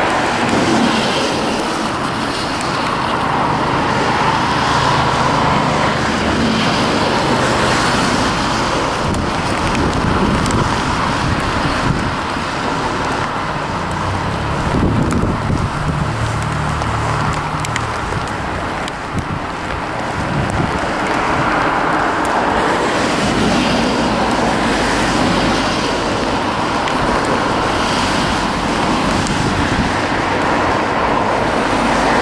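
A freight train's loaded coal hopper wagons rolling steadily past beneath a bridge, giving a continuous rumble of wheels on rail with a few sharp clicks.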